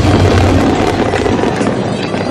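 Aerial firework shells bursting with dense crackling; the low booming dies away about one and a half seconds in while the crackle continues.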